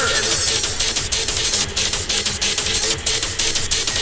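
Happy hardcore DJ mix: a fast, steady electronic dance beat.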